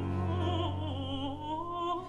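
Baroque opera singing: a solo voice with vibrato sustaining a line over a held bass note, accompanied by a period-instrument orchestra.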